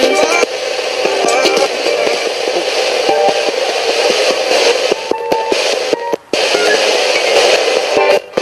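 Spirit box: a RadioShack pocket radio sweeping up the FM band, steady static hiss broken by clipped scraps of station audio, played through a small external speaker. The sound drops out briefly about six seconds in.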